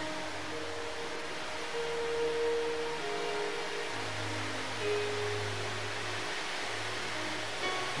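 Soft background church music: slow, sustained keyboard chords changing every second or two, with a low bass note coming in about halfway through.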